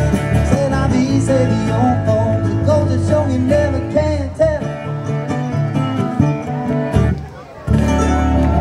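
Live band playing through a PA system: strummed acoustic guitar, a small strummed four-string instrument and bass guitar with a sung melody. Near the end the music briefly drops away, then comes straight back in.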